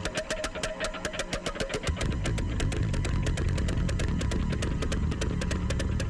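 Live band playing instrumentally: a fast, even drum pattern of about eight sharp hits a second, joined about two seconds in by a heavy, sustained low bass.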